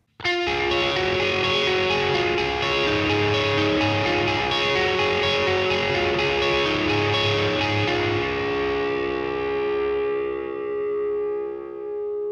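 Electric guitar played direct through a Line 6 Helix LT amp modeler with a modulated delay patch in the style of a Memory Man, picking a melodic line of single notes. Near the end the playing thins to a few held notes that ring out and fade.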